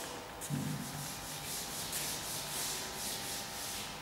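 A chalkboard eraser wiping chalk writing off a blackboard in quick back-and-forth strokes, about three or four a second.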